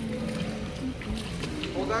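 Steady low rumble of a reverberant indoor pool hall, with a single low tone held for about the first second and a few short tones after it. A man's voice starts near the end.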